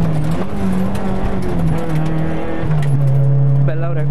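Fiat 600 Kit rally car's four-cylinder engine heard from inside the cabin, its note dropping in several steps as the car eases off and slows just past the stage finish.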